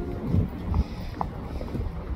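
Wind rumbling on an outdoor microphone, with a few faint clicks.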